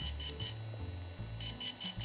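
DJI Phantom 3 motors beeping in quick runs of short, high-pitched beeps while a firmware update is in progress, with a low background music line underneath.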